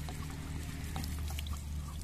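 Water dribbling by hand onto dry straw mulch, a light watering of freshly sown ridge gourd seeds, with small scattered ticks of drops landing on the straw over a steady low hum.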